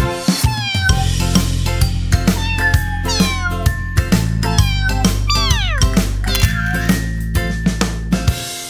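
Bouncy children's song instrumental with a steady beat and bass, overlaid with several cartoon cat meows that fall in pitch, the longest one about five seconds in.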